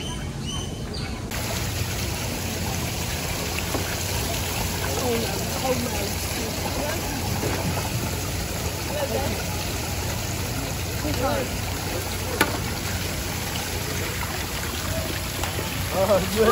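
Water running and splashing from the open pipe spouts of a children's water play table, an even rushing trickle that starts abruptly about a second in, with children's voices faint in the background.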